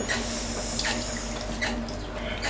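Water trickling and splashing as a wet leather chamois is squeezed out. It is steady for about a second and a half, then eases off, over the steady hum of a potter's wheel motor.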